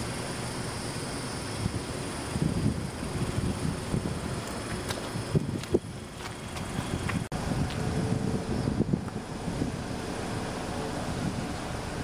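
Wind on the microphone over steady outdoor background noise, with a couple of light knocks about five and six seconds in and a brief dropout soon after.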